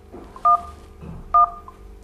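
Two short electronic beeps from the RaceFox ski-technique app on a smartphone, about a second apart, each two tones sounding together: the countdown after an interval workout is started.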